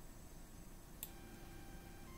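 Near-silent room tone with one faint computer mouse click about a second in, followed by a faint steady hum.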